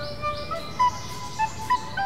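Background score: a slow melody on a flute, with notes held and stepping up and down.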